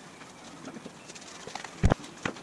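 Fabric of a homemade sandbag being handled, with soft rustles and small clicks, then one loud, dull thump near the end.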